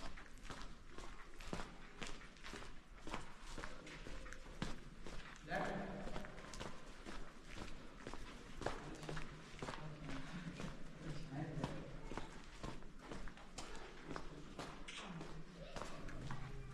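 Footsteps walking steadily along the dusty floor of a salt-mine tunnel, with people's voices talking at times in the background.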